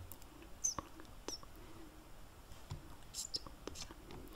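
Faint, scattered small clicks close to the microphone: soft mouth sounds and a few light taps on a computer keyboard.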